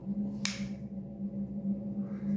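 A cigarette lighter struck once, a short hiss about half a second in, over a steady low hum.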